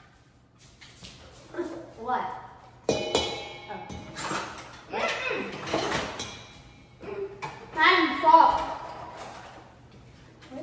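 Kids' voices without clear words, with a sharp metallic clink about three seconds in that rings on briefly, like something striking the stainless steel mixing bowl, and further knocks around the bowl.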